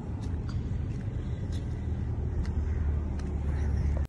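Steady low rumble of outdoor background noise, with a few faint ticks.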